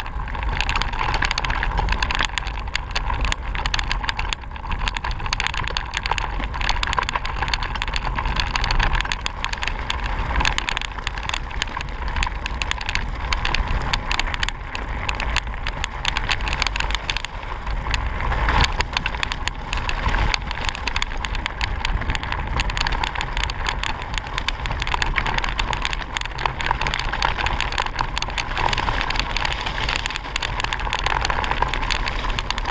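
Mountain bike ridden over a loose gravel track, picked up by a camera mounted on the bike. A steady rumble of wind and tyres runs throughout, with constant rattling and small jolts from the rough surface.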